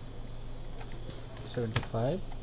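A few computer keyboard keystrokes and clicks, the sharpest and loudest just before the end, over a steady low hum.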